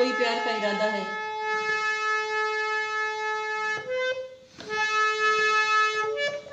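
Harmonium reeds sounding one long held note, then a few shorter notes after a brief break about four and a half seconds in.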